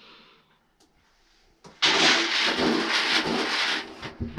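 Hand-shelled corn kernels shaken in a plastic bucket to mix the sample before a moisture test: a dense rattle that starts abruptly a little under two seconds in and lasts about two seconds.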